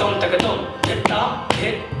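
Kathak dance music: sharp percussive strokes, about two a second, over held pitched tones.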